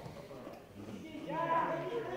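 Voices shouting, quieter at first and louder from about a second in.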